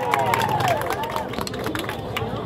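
Crowd clapping and cheering: scattered hand claps mixed with raised, wavering voices.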